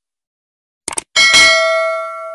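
Subscribe-button sound effect: a quick double mouse click about a second in, then a bright bell ding that rings on and slowly fades.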